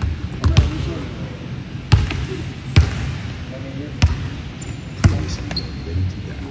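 Basketball bouncing on a hardwood gym floor: five sharp bounces, unevenly spaced about a second apart.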